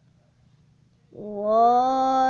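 After about a second of near silence, a child's voice lets out one drawn-out, cat-like wail that rises slightly in pitch and then holds.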